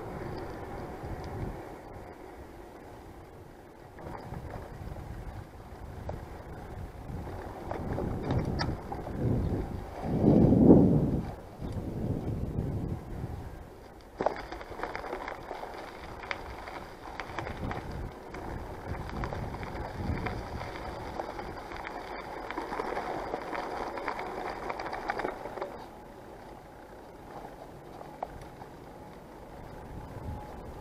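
Riding noise of a Yamaha PAS City-V electric-assist bicycle: wind and tyre rumble on the bike-mounted camera's microphone, swelling to a loud whoosh about ten seconds in, with a sharp knock a few seconds later.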